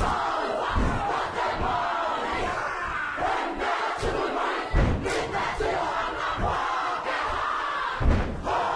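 A large Māori kapa haka group chanting a haka in unison, many voices shouting together. Several heavy thuds from stamping feet and slapped bodies mark the beat, the loudest about five seconds in.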